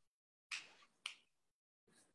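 Near silence, broken only by a faint short hiss about half a second in and a brief click about a second in.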